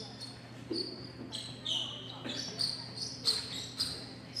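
Several short, high squeaks of court shoes on a squash court floor, with a few light knocks in between.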